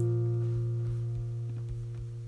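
An acoustic guitar chord, struck once just before, ringing out and slowly fading.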